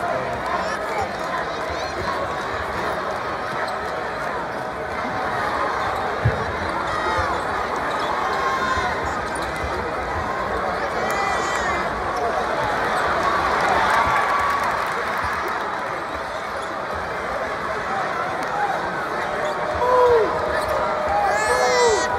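Basketball game in a packed arena: constant crowd chatter, a ball bouncing on the hardwood court and sneakers squeaking, with one sharp thump about six seconds in.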